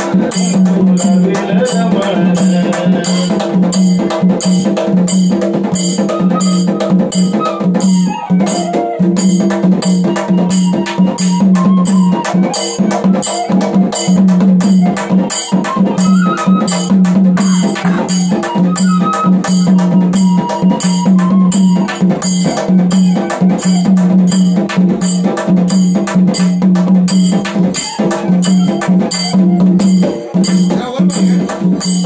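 Instrumental interlude of folk music: a bamboo flute plays a wavering melody over fast, even beats on a hand-held frame drum struck with a stick, with a low steady drone underneath.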